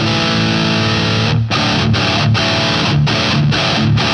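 Heavily distorted Jackson electric guitar in drop D tuning playing a metal riff on suspended chord shapes. A chord rings for about a second and a half, then the chords are cut off by short stops about every half second.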